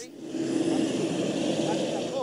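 Jet airliner engines running: a steady low rumble with a faint hum.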